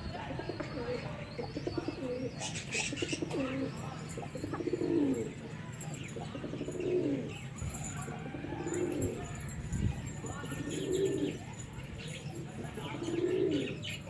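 Domestic pigeons cooing, a low rising-and-falling coo repeated about every two seconds.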